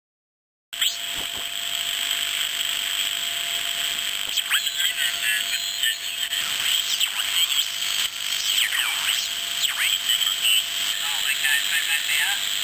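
Amateur-band audio from a 3.5 MHz crystal set with a beat frequency oscillator and one-transistor amplifier, cutting in suddenly under a second in: steady hiss and a constant whistle, with heterodyne whistles sweeping up and down in pitch and snatches of unintelligible sideband voice as the dial is tuned across 80-metre signals.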